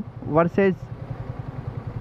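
Yamaha sport motorcycle's engine running at low speed in slow traffic, a steady low pulsing note heard from the rider's seat, with a short spoken word over it near the start.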